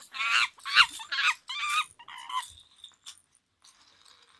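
A run of quick, high-pitched, monkey-like hooting calls over the first two seconds, then a few faint clicks and rustles of a beanbag's plastic pellets being handled.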